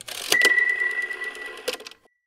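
Sound-effect sting for an animated channel logo: a couple of sharp clicks, then a single high tone held for about a second and a half over fast ticking, closed by another click near the end.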